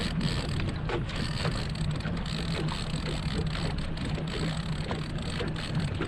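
Boat motor running steadily in gear at trolling speed: a continuous low hum under a wash of water and wind noise.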